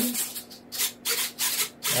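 Servos of a Freewing L-15 foam RC jet driving the ailerons to full high-rate throw and back, heard as several short buzzing bursts.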